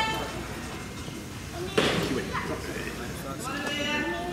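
Indistinct voices, with one sharp impact about two seconds in.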